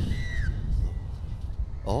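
Outdoor field ambience: a steady low rumble of wind on the microphone, with one short, high call that falls in pitch in the first half-second. A man's voice begins right at the end.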